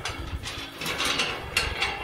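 Metal garden gate being opened: a few sharp metallic clicks and a scraping rattle from its latch and hinges about a second in.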